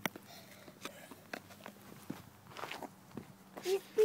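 Footsteps scuffing on an asphalt driveway as someone steps back from an Alka-Seltzer film-canister rocket. A short voice comes in near the end.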